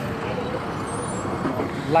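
Steady road traffic noise, like a heavy vehicle going by on the street, with faint voices.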